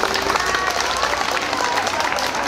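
A crowd applauding, with voices heard over the clapping.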